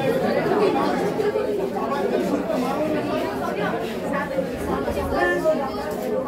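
Chatter of many boys' voices overlapping in a hall, with no single speaker standing out.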